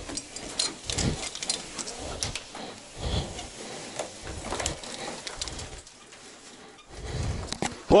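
Climbing gear and clothing scraping and clinking against rock as a caver squeezes down a narrow mine shaft: irregular knocks and clicks of metal hardware over rustling, with a person's breathing.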